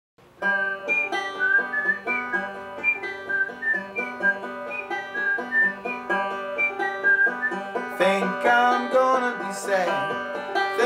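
Five-string banjo in open G tuning fingerpicking a steady forward-reverse roll on a G chord, the intro of a song, with quick even plucked notes and a higher melody line on top. A voice comes in near the end.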